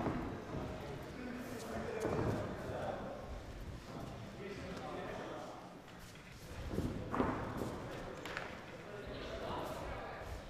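Indistinct shouting from coaches and spectators echoing in a large hall, with a few sharp thuds from strikes landing, the loudest about two seconds in and around seven to eight seconds in.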